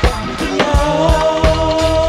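Reggae song: drums and bass on a steady beat, with a long held note coming in about half a second in.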